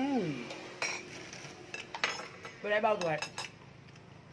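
Metal spoons clinking against plates and a metal serving tray while people eat, a few short clinks with the sharpest about a second in.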